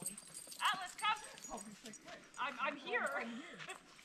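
Indistinct talk among a group of people a short way off, with a dog moving about close by.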